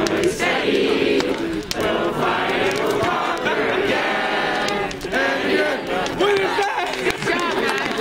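A group of voices singing together in a loose, ragged chant, several voices overlapping with some held notes.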